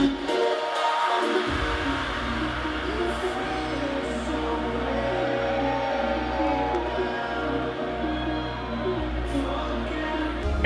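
Electronic dance music with a steady low bass line. The bass drops out about half a second in and comes back about a second later.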